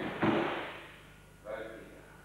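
A body dropping onto a martial-arts practice mat as a partner is taken down for a pin: one sudden thud about a quarter second in, fading over about half a second.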